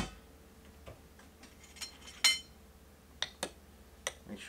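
A metal kettle knocking down onto the wooden bar, then a few light clinks of a spoon against a glass French press as the coffee grounds are stirred, one clink ringing brightly a little past two seconds in.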